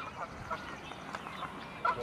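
Faint, short calls of waterfowl on a pond, a few scattered calls that grow louder right at the end.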